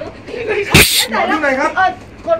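A single short, loud burst of noise a little under a second in, with talk before and after it.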